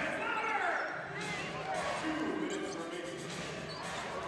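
Live basketball game sound: the ball bouncing on the hardwood court, with scattered voices of players and crowd echoing in the arena.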